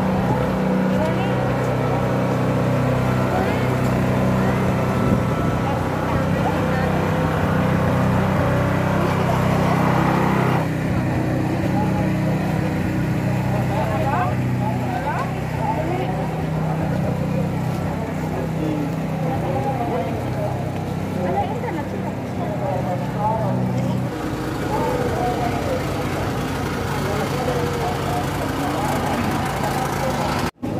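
A small engine runs steadily with a low, even hum, under the voices of a crowd. The hum stops about three-quarters of the way through, leaving the voices.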